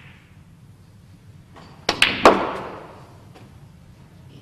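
A snooker shot: three sharp clicks of cue and balls in quick succession, about two seconds in, as a red is potted. The last click is the loudest and rings briefly. A fainter click follows about a second later.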